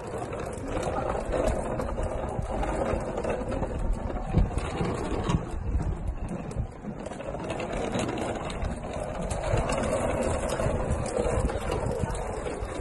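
Rolling suitcase wheels rattling steadily over rough concrete pavement, easing briefly about seven seconds in.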